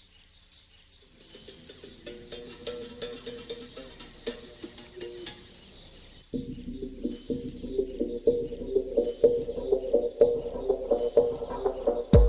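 Intro music fading in, a repeating rhythmic pattern of notes over faint chirping at the start, growing clearly louder about six seconds in.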